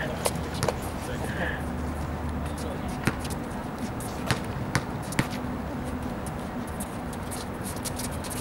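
A basketball bouncing on an outdoor hard court: a handful of single sharp knocks at irregular gaps of about a second or more, over a steady low background rumble.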